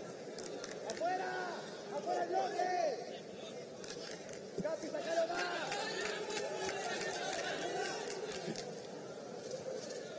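Voices on and around a football pitch: scattered shouted calls, strongest about a second in and again around the middle, over a steady outdoor murmur from a small stadium crowd.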